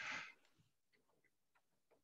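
Near silence in a pause between speech: a short breathy hiss that stops about a third of a second in, then a few faint, scattered ticks.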